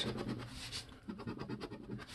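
A coin scraping the latex coating off a scratch-off lottery ticket in quick, short, repeated strokes.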